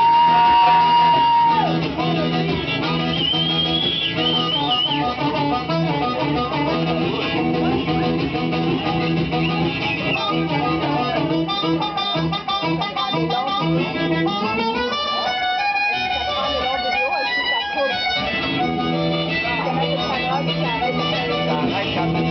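Amplified blues harmonica played cupped against a handheld microphone, holding a long note at the start, bending a wavering note a few seconds in, then running through quick phrases, over guitar accompaniment.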